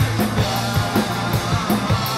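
Live rock band playing: electric bass, electric guitar and a drum kit keeping a steady beat.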